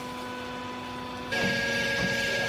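Hydraulic power unit of a vertical baler running with a steady hum. About a second and a half in, the sound turns abruptly louder, with a higher whine and a hiss as the pump goes under load when the press is started from the control panel.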